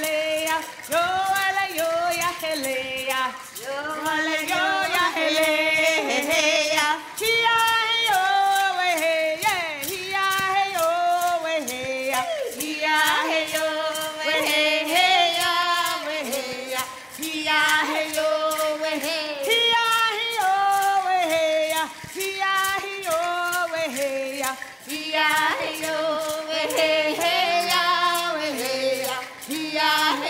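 Women singing a Choctaw gathering song in vocables ("hey ya he yo we hey") over a steady hand-drum beat, the beat that opens a Choctaw gathering.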